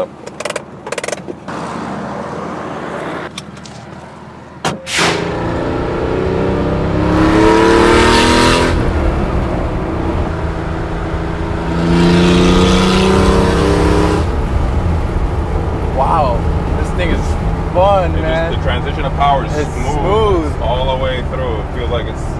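Supercharged air-cooled flat-six of a 1995 Porsche 911 Carrera 2 (993) RWB build accelerating hard, revving up twice: from about five seconds in and again around twelve seconds. A few clicks and a knock come before the engine gets loud.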